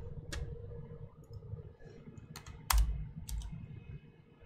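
A few scattered computer keyboard keystrokes, single clicks with short gaps, clustered about two and a half to three and a half seconds in.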